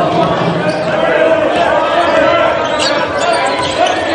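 Sound of a basketball game in a gymnasium: voices from the crowd and bench run throughout, and a basketball bounces on the hardwood court as it is dribbled.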